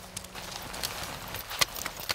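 Irregular sharp crunches and clicks from a line of people stepping forward in snow and pushing avalanche probes into it during a probe search, the loudest crunch about one and a half seconds in.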